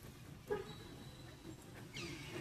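A monkey gives one brief, squeaky call about half a second in, over a faint steady high-pitched tone.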